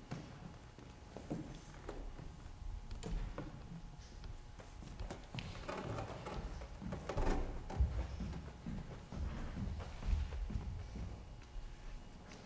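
Quiet clicks, knocks and rustling of a microphone stand being set in front of a classical guitar and the guitar being handled, busier and louder for a couple of seconds in the middle.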